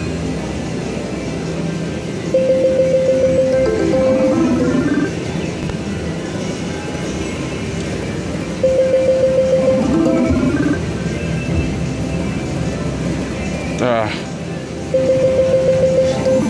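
WMS Dragon's Legend video slot machine playing its free-spin bonus sounds: electronic music with a spin sound about every six seconds, each a held tone of about a second followed by a rising flourish as the reels settle. This repeats three times over a steady casino background.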